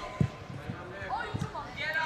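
A football kicked on artificial turf in a large indoor hall: one sharp thud just after the start, then a few fainter kicks, with players' distant shouts echoing in the background.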